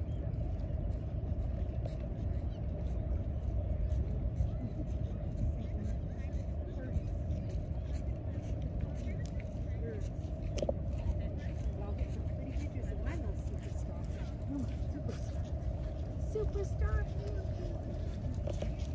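Steady low outdoor rumble with faint voices of people talking in the background.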